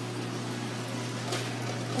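Steady low hum with an even faint hiss: the background noise of a store's aquarium aisle, where the tanks' pumps and filters run.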